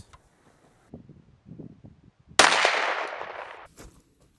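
A single 12-gauge shot from a Mossberg 930 semi-automatic shotgun firing a slug, about two and a half seconds in; the blast rings on for about a second and then cuts off. Faint handling sounds come before it.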